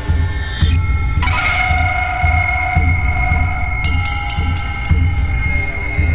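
Tense horror-style background music: a low beat repeating a little more than once a second under a high held tone that comes in about a second in.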